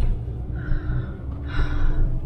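Two short breathy, gasping laughs from a person in a moving van's cabin, over the steady low rumble of engine and road noise.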